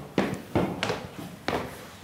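Footsteps of people walking upstairs: a few sharp, irregular steps on a hard surface.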